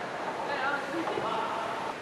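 Faint voices, likely other people talking at a distance, over a steady background hum.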